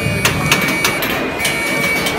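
Stadium entrance turnstile as a ticket is scanned: a steady high electronic tone from the reader with a run of sharp mechanical clicks, about three a second.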